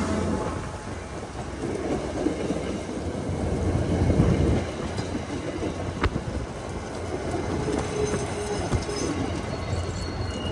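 Commuter rail passenger coaches rolling past, their steel wheels rumbling steadily on the rails, with a couple of sharp clicks from the rail joints and a faint wheel squeal near the end.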